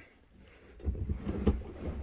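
Cloth jackknife sofa bed being folded back up into a sofa: a low rumbling shuffle of cushions and frame with a couple of knocks, the loudest about a second and a half in.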